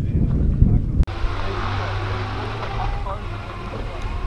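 A car engine running steadily nearby, with crowd chatter in the background. The sound changes abruptly about a second in.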